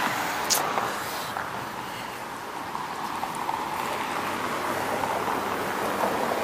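Steady noise of road traffic, cars passing on a busy city street, with a brief click about half a second in.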